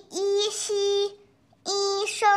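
A child's voice reading Chinese syllables aloud, slow and drawn out in a sing-song pitch. Two syllables come close together, then there is a short pause, and a third starts near the end.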